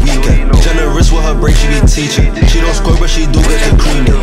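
Bass-boosted hip hop track: a heavy, steady deep bass and a regular beat, with a rapped vocal line over it.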